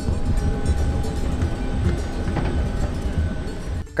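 Wind buffeting the microphone in a strong, uneven low rumble, with a faint steady whine running over it.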